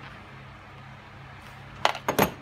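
Steady low hum with a single sharp knock near the end, from hands handling the snow machine's metal casing and cover.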